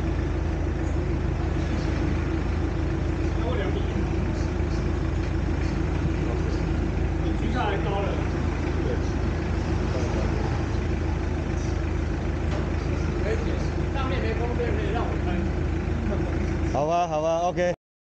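Mitsubishi Delica 4x4 van's engine idling steadily in a workshop, with faint voices over it and a short stretch of speech near the end, where the sound cuts off.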